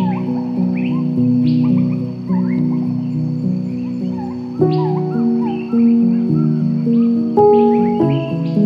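Slow, soft piano music with birds chirping over it in short rising chirps. New chords are struck about halfway through and again near the end.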